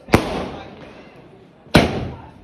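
Aerial fireworks going off: two sharp bangs about a second and a half apart, each trailing off over about a second.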